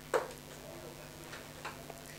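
A few light, separate clicks at a low level, with a sharper one just after the start.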